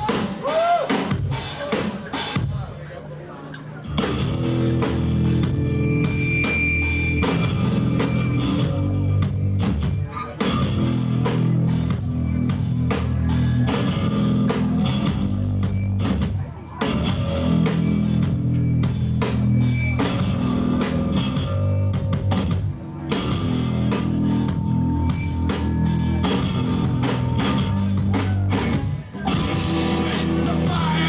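Live rock trio of electric guitar, bass guitar and drum kit playing a loud, stop-start passage. Scattered drum hits open it, the full band comes in about four seconds in, and the band breaks off briefly every six or seven seconds.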